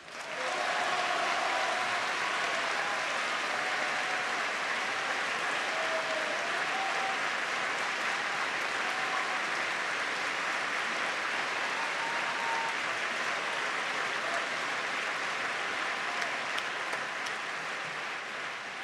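A large theatre audience applauding, breaking out suddenly as the piano stops and holding steady and loud.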